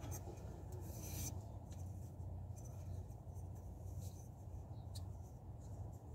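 Hands handling a new crankshaft front oil seal, giving soft rubbing and scratching with a few brief scrapes, the loudest about a second in. A steady low hum runs underneath.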